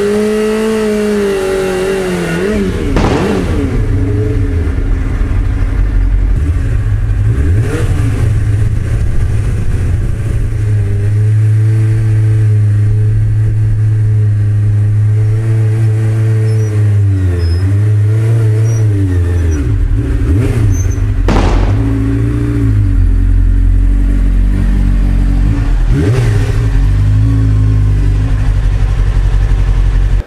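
Street sports bike's engine revved hard and held at high revs for long stretches, dipping and rising again several times, as the bike works on hard field soil. A few short sharp noises stand out over it, about three seconds in and near the middle.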